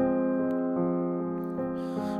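Digital piano playing a slow left-hand F minor arpeggio in the bass, single notes struck about half a second apart and left ringing over one another.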